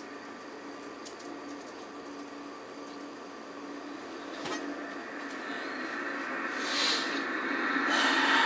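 Steady hum and hiss from a television speaker between lines of broadcast commentary, growing somewhat louder over the last few seconds.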